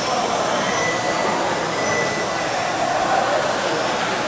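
Several 1/12 scale electric on-road RC cars with 17.5-turn brushless motors run in 'blinky' (no-timing) mode, lapping a carpet track: a steady whir of motors and tyres, with faint high whines coming and going as the cars pass and accelerate.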